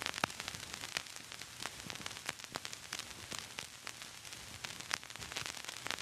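Low, steady static hiss scattered with irregular crackles and pops, like the surface noise of an old record or film soundtrack.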